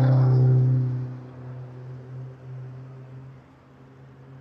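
A track car's engine running at a steady pitch as it drives through a corner. The note is loud at first, then fades away over a couple of seconds as the car drives off.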